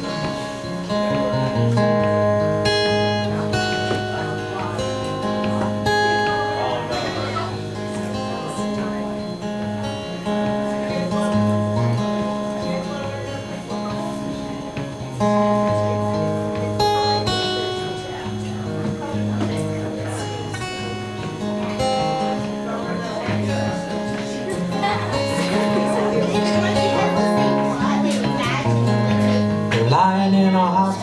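Solo steel-string acoustic guitar playing a slow instrumental introduction to a folk song, with picked notes ringing over a steady bass line.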